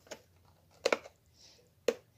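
Clear hard-plastic retail package handled in the hands, giving two sharp clicks about a second apart.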